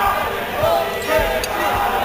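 Many overlapping voices chattering in a large hall, with irregular low thumps beneath.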